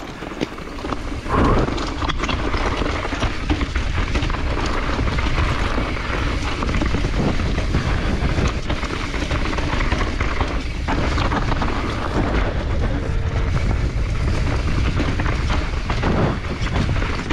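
Electric mountain bike descending fast over dirt and rocks: a steady low rumble of wind buffeting the camera microphone and tyres rolling over the trail, with frequent rattles and knocks from the bike over bumps and a louder jolt about a second and a half in.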